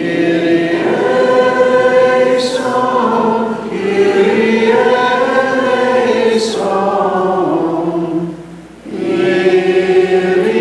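Several voices singing a chanted Maronite liturgical response together, in two long phrases, with a third beginning near the end.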